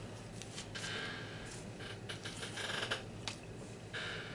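Faint handling noises: light rustling and a few soft taps as a scratch-off lottery ticket is moved about on a countertop.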